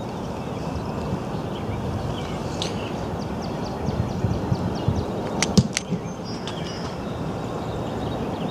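Steady low outdoor rumble with small birds chirping, and about five and a half seconds in a single sharp thump: a football kicked off a tee on a kickoff.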